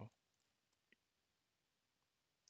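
Near silence, with one faint click about a second in: a keystroke on a computer keyboard.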